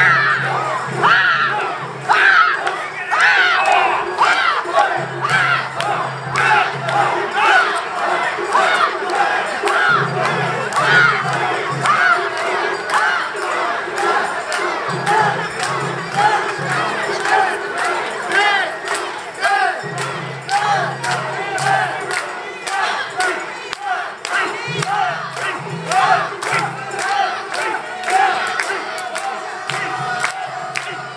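Crowd of mikoshi bearers chanting in unison as they carry the portable shrine, with short rhythmic shouts about twice a second.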